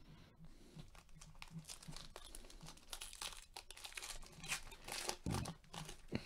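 Foil wrapper of a basketball trading card pack crinkling as it is torn open by gloved hands, with a louder rustle a little after five seconds in.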